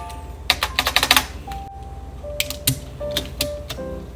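Background music with a light melody, over which mechanical keyboard parts click as they are handled: a quick run of clicks about half a second to a second in, then a few single clicks spaced out.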